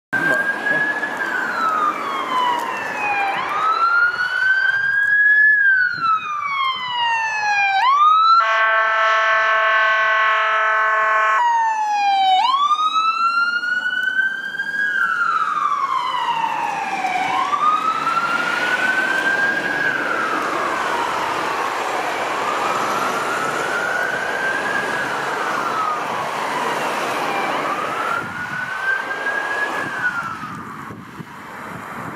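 Ambulance siren wailing in slow rising and falling sweeps. The sweeps quicken briefly about six to eight seconds in. They are broken by a steady, many-toned horn blast of about three seconds, then the wail resumes.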